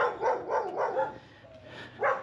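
Small dogs barking, a quick run of short yaps in the first second, then quieter.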